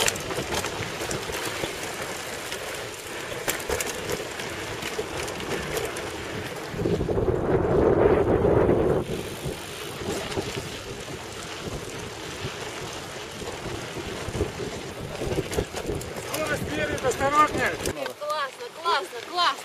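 Wind buffeting the camera microphone over the rattle and tyre noise of mountain bikes riding a dirt track, with a stronger gust from about seven to nine seconds in.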